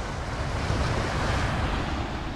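Small waves washing onto a sandy shore, a steady rush of surf, with wind buffeting the microphone.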